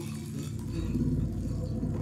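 Deep, steady rumble from a TV episode's soundtrack, swelling about half a second in.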